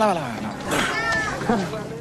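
Men's voices speaking in film dialogue. About a second in, one voice draws out a sound whose pitch rises and then falls.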